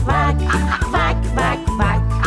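Cartoon duck quacking several times over children's song music.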